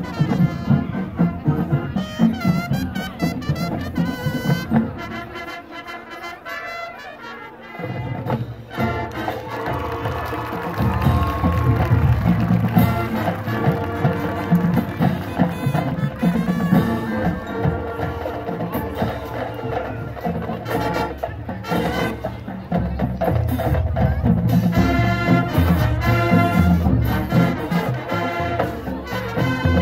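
High school marching band playing, with brass and drumline. The low brass and drums drop out for a softer passage about five to eight seconds in, then the full band comes back louder.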